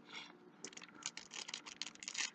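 Faint, rapid crinkling and clicking of a foil Yu-Gi-Oh booster pack wrapper being handled, getting busier about half a second in.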